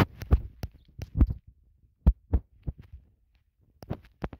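Irregular dull thumps, about ten in four seconds, spaced unevenly: fingers tapping and pressing on a phone's touchscreen, heard through the phone's own microphone.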